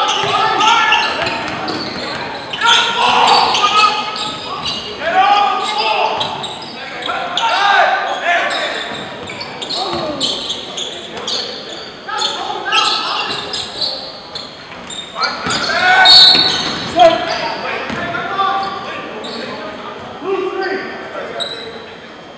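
A basketball being dribbled and bounced on a hardwood gym floor, with players and coaches shouting. The sound echoes in a large hall.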